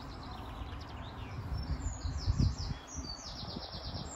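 Small songbirds singing: runs of quick, high, falling chirps, ending in a fast trill near the end, over a steady low rumble that swells about halfway through.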